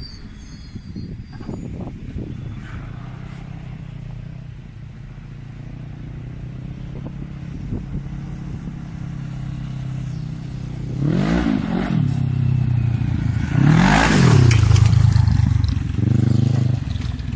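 Quad's swapped-in Kawasaki ER6 650cc parallel-twin engine running as it rides, heard from afar at first and growing louder. Near the end it revs twice, each rev climbing and falling in pitch, the second the loudest.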